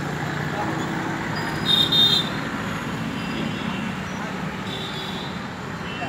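Steady street traffic noise, with a brief high-pitched vehicle horn about two seconds in and a fainter short horn near the end.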